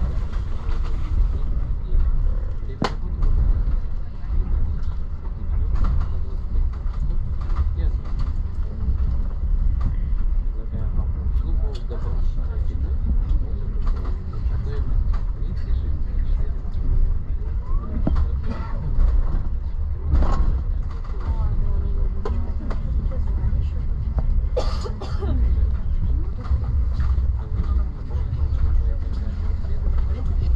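Moving passenger train heard from inside a coach: a steady low rumble of wheels on rails, broken by irregular sharp knocks from the wheels on the track.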